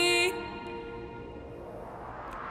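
Women's voices in close harmony with piano end a held chord shortly after the start, and the piano chord then rings on and fades away quietly.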